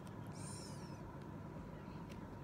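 Soft handling of a foam squishy toy being squeezed in the hands, with one brief faint hiss about half a second in, over a steady low hum.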